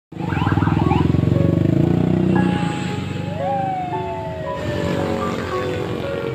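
Many motor scooter engines running in dense traffic, loudest over the first two and a half seconds. Over the engines come held pitched tones and one long tone that rises, then slowly falls.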